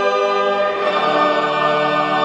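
A choir singing held chords, moving to a new chord about a second in.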